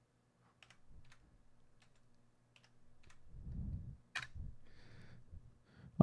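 Faint computer keyboard and mouse clicks, a few scattered light taps with the sharpest about four seconds in, and a soft low-pitched bump just before it.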